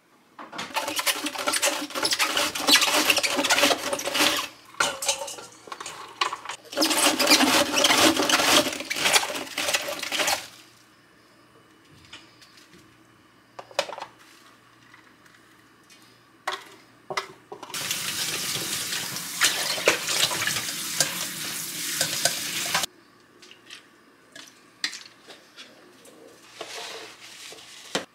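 A cabbage head being shredded on a plastic mandoline slicer: long runs of rapid rasping strokes, with a short break about five seconds in. A few light clicks and knocks of handling follow. Then a kitchen tap runs onto the shredded cabbage in a stainless-steel colander in the sink for about five seconds and cuts off suddenly.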